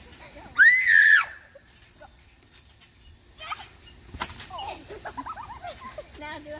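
A girl's short, high-pitched scream about half a second in, lasting under a second. A few seconds later comes a single thump, followed by softer voice sounds.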